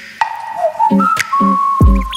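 Background music with a steady beat: deep kick drums, short chord hits, and a high held melody line that slides downward near the end.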